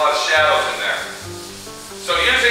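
A hand rubbing over the coarse, textured fiberglass inner surface of a car hood.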